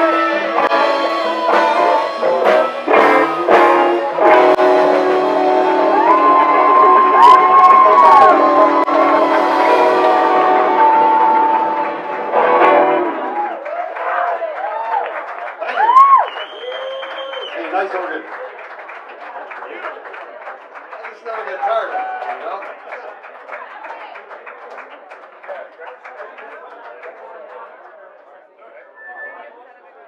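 Live blues band with electric guitars, drums and harmonica playing the last bars of a song, which ends about halfway through. Then audience cheers and whoops, fading into crowd chatter.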